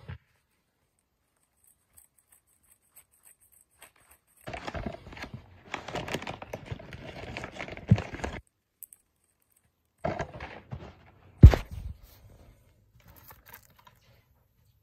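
After a few seconds of near silence, a brown paper mailer is torn open and crinkled for about four seconds, ending in a thud; then a short rustle and one sharp knock.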